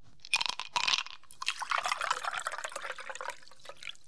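Liquid being poured, a splashing, crackling pour that starts a moment in and runs for about three seconds before tailing off.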